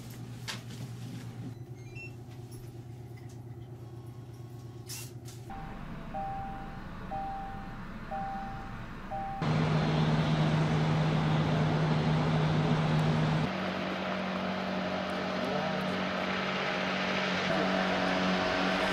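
A steady engine noise with a low hum, like a truck or heavy machine running, which is the loudest sound and comes in about halfway. Before it, a short beep repeats about once a second for a few seconds.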